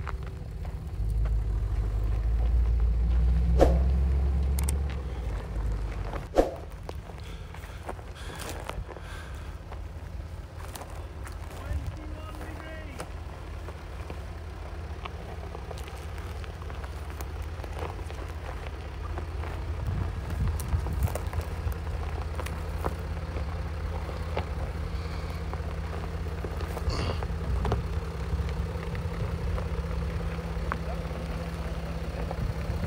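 Land Rover Discovery 5 crawling slowly down a steep gravel track, its engine running low and steady and its tyres crunching and popping over stones. There is a heavier low rumble in the first few seconds, and two sharp knocks a few seconds in.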